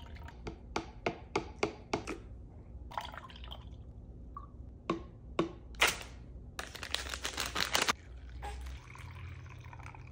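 Pumped breast milk dripping from a breast-pump cup into a small glass jar: a quick run of drops in the first two seconds, then scattered drips. About seven seconds in, a plastic milk storage bag rustles for just over a second as it is handled.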